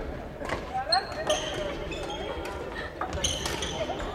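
Badminton rackets hitting shuttlecocks with sharp short cracks, the loudest about a second in, and sports shoes squeaking on a wooden gym floor, with voices in the background of a large, echoing hall.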